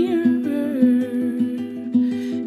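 Fingerpicked acoustic guitar playing a steady run of plucked notes, about five a second, with a soft wordless hum from the singer over it.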